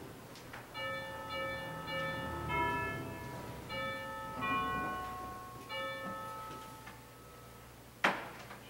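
Church organ playing a quiet, slow passage of single sustained notes with a bell-like ring, several notes a second or so apart, dying away near the end.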